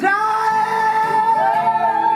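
Live folk-rock band: a high, loud sung note that starts suddenly and is held through, with other voices joining in harmony partway through, over acoustic guitars and mandolin.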